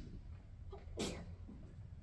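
A person sneezes once, sharply, about a second in, over the steady low hum of a quiet hall.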